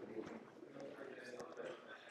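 Faint, indistinct talk in a lecture room.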